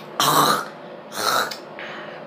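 Two coughs, about a second apart, then a fainter third near the end, set off by a spoonful of Tapatio hot sauce.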